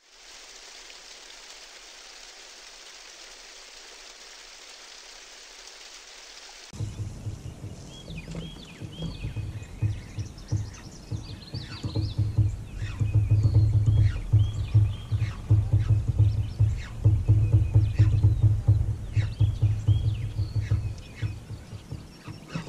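A steady hiss under the intro for the first several seconds, then cutting to outdoor river sound: birds chirping and singing repeatedly over a low, fluttering rumble.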